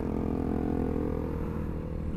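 Motorcycle engines running steadily at cruising speed while riding, one of them a motorcycle with an upward-pointing aftermarket exhaust that is being passed and is described as very noisy.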